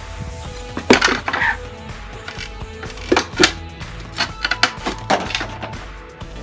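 Sharp knocks and clatters of wood, a plywood board being handled against a wooden door, coming in three clusters with the loudest about a second in, over steady background music.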